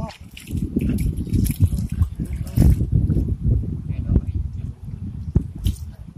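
Hands sloshing and splashing in shallow river water and mud among rocks while groping for fish, with irregular short splashes over a heavy low rumble on the microphone.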